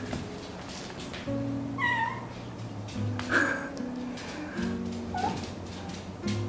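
A cat meows three times, short wavering calls about two, three and a half and five seconds in, over background music of acoustic guitar.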